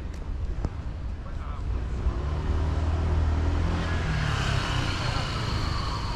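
A motor vehicle's engine running close by, growing louder through the middle, with a high whine that falls in pitch near the end as it passes.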